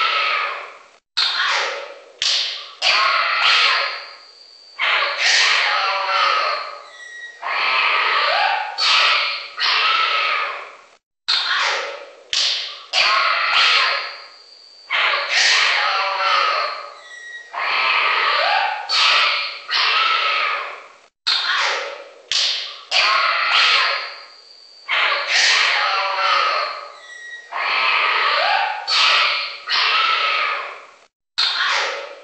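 Synthetic wildlife-safari soundscape of animal calls and cries mixed with sharp thumps and taps. The same passage of about ten seconds repeats three times, each time after a brief dropout.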